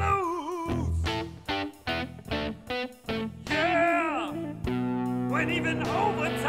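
A blues song: a man singing with electric guitar. Short picked guitar phrases fill the gaps between his sung lines, and a held chord rings from near the end.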